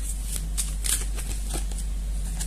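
Tarot deck being handled and shuffled by hand as a card is drawn from it: a few short, dry papery swishes and taps of card on card.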